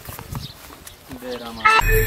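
Faint voice and clicking sounds, then a rising electronic sweep near the end that lands on a sudden hit, the start of a production-logo sting.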